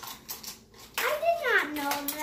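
A child's voice from about a second in, one drawn-out, wordless call that rises and then falls in pitch and holds lower. Before it, a few light clicks of small plastic toy vehicles being handled.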